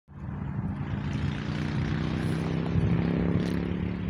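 An engine running steadily: a constant low hum over a rushing noise that eases off slightly near the end.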